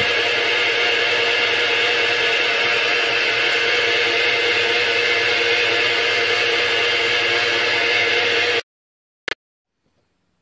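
Home-built milling machine running steadily as its spindle drills a key hole through the joint between a steel flange and the mill taper, a constant whir with steady tones in it. It cuts off abruptly about eight and a half seconds in, and a single click follows.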